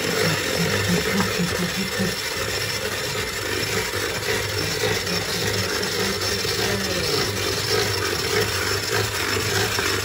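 Electric hand mixer running steadily, its beater whisking a thin liquid batter in a plastic bowl.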